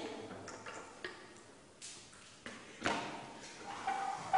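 A few light clicks and taps as wire leads are plugged and clipped into a school ammeter and circuit components on a bench. The loudest click comes about three seconds in.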